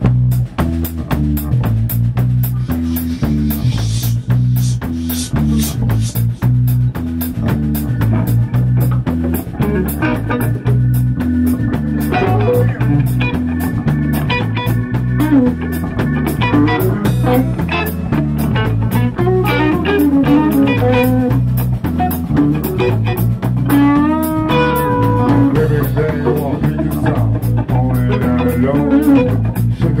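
A rock band playing a song together: electric guitars, bass guitar, drum kit and electronic keyboard, starting right after a count-in, with a steady drum beat and a repeating bass line.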